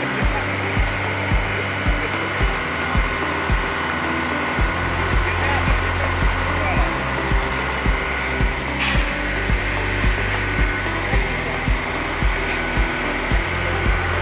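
Concrete pump running as concrete is fed through its delivery hose into formwork: a steady mechanical drone with a low, regular thud a little under twice a second.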